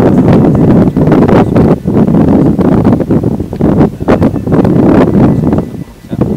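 Wind buffeting a handheld microphone outdoors: a loud, gusty rumble.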